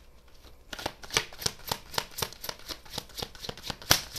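Tarot cards being shuffled by hand: a quick run of crisp card snaps and slaps, about three or four a second, starting a little under a second in, the sharpest one near the end.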